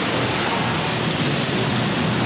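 Steady rushing wind noise on the microphone, even throughout, with a faint low hum underneath.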